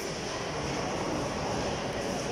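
Steady background noise of a busy bowling alley: a continuous, even rumble and hiss with no sudden events.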